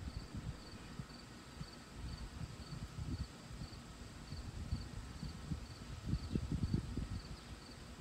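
Insects chirping in a steady rhythm, a short high pulse about twice a second, over a faint low rumble.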